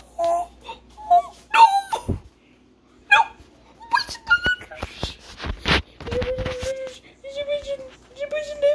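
A voice making short whimpering, crying sounds that rise and fall in pitch, broken by a few sharp noisy bursts, then drawn out into longer held wails near the end.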